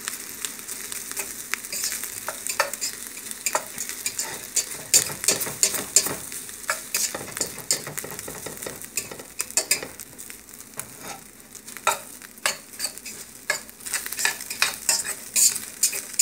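Fried rice sizzling in a large stainless steel pot over a lit gas burner, stirred continuously, with irregular scrapes and taps against the pot sides over a steady sizzle.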